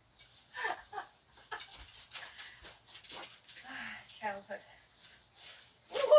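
Quiet, indistinct voices with soft scratching and rustling as sunflower seeds are picked out of a dried seed head.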